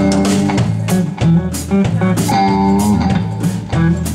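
Live band playing an instrumental passage: guitar over bass guitar and a drum kit keeping a steady beat.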